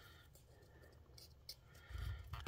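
Near silence, with a few faint ticks from hands pressing and handling a plastic model hull.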